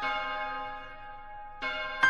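A large bell tolling in a piece of music: one strike at the start rings on and slowly fades, and another struck note comes in near the end.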